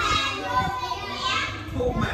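Children's voices: several pupils talking at once in a classroom.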